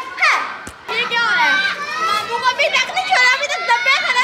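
Children's voices calling out, several at once and high-pitched.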